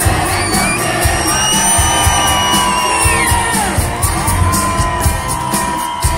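Live rock band playing on stage, with drums and guitars keeping a steady beat under long held high notes that slide down about halfway through.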